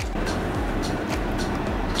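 Steady, even rumbling noise from a gas stove burner still lit under the cooking pot.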